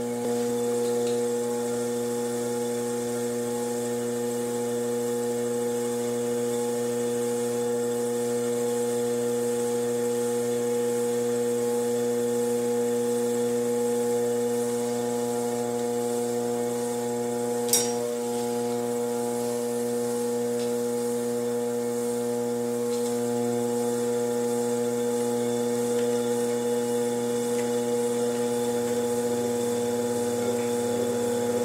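Steady electrical hum, several fixed tones that do not change in pitch, with a single sharp click about eighteen seconds in.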